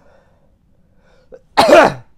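A single loud cough from a boy into his fist, about one and a half seconds in.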